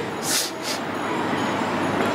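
Steady rushing background noise with no voice, with two short hisses about a third and two thirds of a second in.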